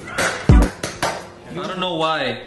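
A few sharp clattering knocks, with a low thump about half a second in, followed near the end by a person's voice with sliding pitch.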